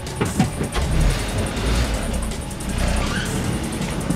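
A Kia Sportage SUV's engine pulling away from the curb, with a low rumble that builds about a second in, under background music.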